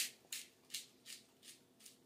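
Ground cinnamon shaken from a spice jar over whipped cream: a faint dry rattle in about six quick, evenly spaced shakes, a little under three a second.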